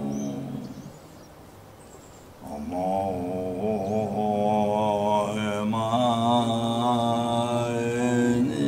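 A Tibetan Buddhist monk chanting a mantra in a low, drawn-out voice. The chant fades out about a second in and resumes about two and a half seconds in, then carries on steadily.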